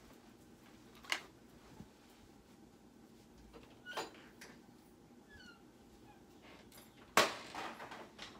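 Scattered handling knocks as things are moved about and put away in a closet: a knock about a second in, another around four seconds, and the loudest, a sharp knock with a brief clatter after it, just past seven seconds. A few faint short high squeaks come a little after five seconds.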